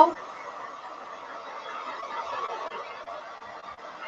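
Handheld hair dryer blowing steadily over wet paint.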